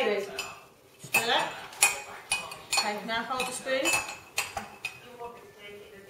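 A metal spoon clinking against a ceramic mug as cake batter is stirred, a quick run of sharp clinks mostly between about one and five seconds in.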